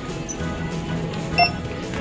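Handheld barcode scanner at a self-checkout giving one short beep about one and a half seconds in, the sign that it has read the item's barcode. Background music runs underneath.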